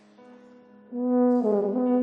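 Bass tuba (Yamaha YFB821S) playing a loud, sustained high note that enters about a second in over a ringing piano chord. Midway the note bends briefly downward, then returns to the same pitch.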